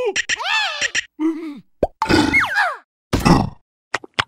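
Cartoon insect characters' wordless voices: several short cries and grunts that slide up and down in pitch, with a short pop a little under two seconds in.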